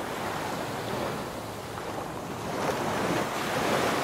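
Rushing ocean surf: a steady wash of waves that eases off in the middle and swells again near the end.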